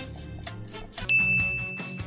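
A bright, bell-like ding rings out about a second in and holds on one steady pitch, over soft background music.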